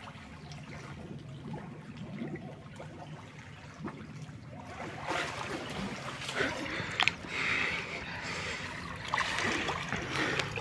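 Swimming-pool water splashing and trickling as swimmers move and surface, louder from about five seconds in, with one sharp splash about seven seconds in. A steady low hum runs underneath.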